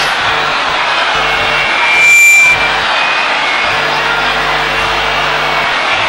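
Music playing in a church hall over the noise of a crowded congregation moving about, with a brief louder burst about two seconds in.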